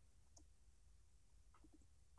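Near silence: faint room tone with a low hum and a few soft, short clicks, one near the start and two close together near the end.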